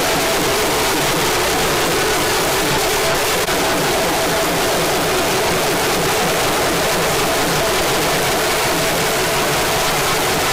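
Holi festival drums and a crowd, heard as a loud, steady wash of noise with no clear beat.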